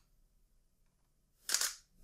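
Nikon D7100 DSLR shutter firing once, about one and a half seconds in: a short, quick clack of mirror and shutter. The flash stays down because the camera is in auto flash-off mode.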